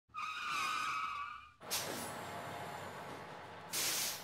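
Vehicle sound effects for an animated bus logo. A wavering tyre screech lasts about a second and a half. It cuts off, then a sudden whoosh with a falling sweep fades into a hiss, and a short loud burst of hiss comes near the end.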